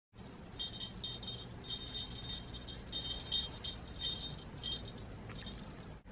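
Small jingle bell on a Santa-hat headband jingling in a series of short, uneven shakes as the headband is handled.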